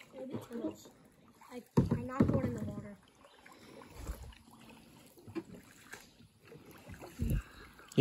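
Kayak paddling: paddle strokes in the water with a few low knocks, and a short burst of a voice about two seconds in.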